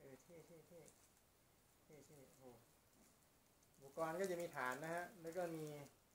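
A man's voice, quiet and brief at first, then louder and steady from about four seconds in.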